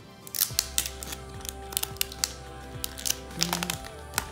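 Thin plastic protective film crackling and crinkling in a string of sharp clicks as it is peeled off a new phone and handled, over steady background music.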